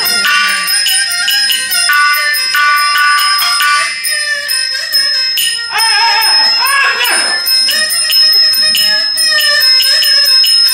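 Traditional Shaanxi shadow-play ensemble music, driven by fast, even strikes of small ringing metal percussion over pitched instrumental lines. About six seconds in, a singer cries out in the peddler's role.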